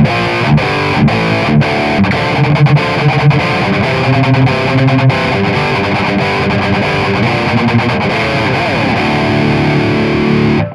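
Heavily distorted electric guitar playing a metal rhythm riff with low chugging notes through a Flamma FX200 multi-effects unit. The tone comes from its 5150 high-gain amp model, boosted by a Tube Screamer-style overdrive switched on with its volume all the way up.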